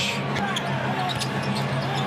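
Basketball game on a hardwood court: a ball being dribbled and several short sneaker squeaks, over steady arena background noise.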